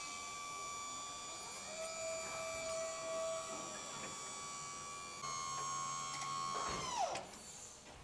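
Electric-hydraulic pump of a 3.5 t tipper trailer running with a steady whine as it raises the bed on its five-stage tipping cylinder. The whine shifts slightly about five seconds in, then falls in pitch and stops about a second before the end as the pump switches off with the bed fully tipped.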